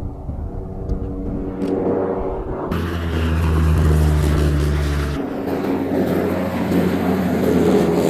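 MQ-9 Reaper's turboprop engine and pusher propeller droning as the aircraft flies past low overhead. The sound jumps much louder about a third of the way in, with a deep hum for a couple of seconds, then carries on as a loud rush.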